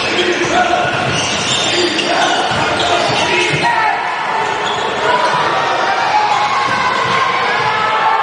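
Basketball dribbled on a hardwood gym floor, with repeated bounces, under shouting voices from players and the crowd echoing in the hall.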